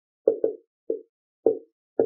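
Marker pen writing on a whiteboard: about five short, dull taps and strokes of the tip on the board as letters are written, two in quick succession near the start.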